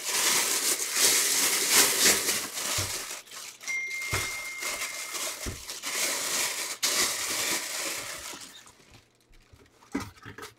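Thin plastic bag crinkling and rustling as it is handled, with small crackles throughout, dying away about eight and a half seconds in.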